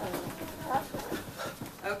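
Footfalls from running in place with high knees: two people's feet landing on the floor in a quick, uneven patter of thuds.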